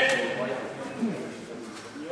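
A man's voice shouts a coaching call and laughs, loudest at the very start and fading quickly, with a short voice sound about a second in, over low background chatter.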